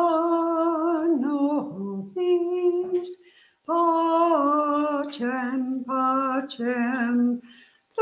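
A small vocal group singing a slow song in long held notes, the phrases broken by a short pause about three seconds in and another near the end.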